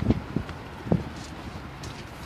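Outdoor background noise with a low steady hum and light wind on the microphone, broken by a few brief clicks in the first second.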